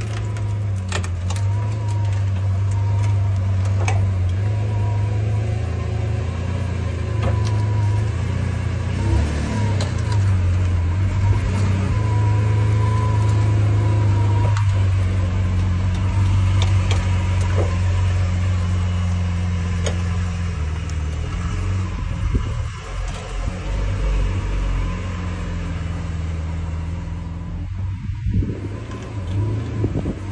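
Lamborghini Aventador SV's naturally aspirated V12 running at low revs, a steady deep drone, while the car is moved slowly onto a car-transporter trailer.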